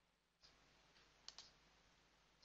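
Faint computer mouse clicks over low hiss: a light click about half a second in, and a sharper double click (button press and release) a little past halfway.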